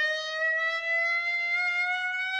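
A clarinet holding a single note and sliding slowly and smoothly upward in pitch, one long glissando. It is an attention-grabbing, siren-like rising wail, likened to a baby's cry.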